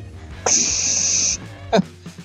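A man's mouth-made hiss, a sharp steady 'ssss' a little under a second long, imitating the constant wind whistle that comes through an open helmet vent.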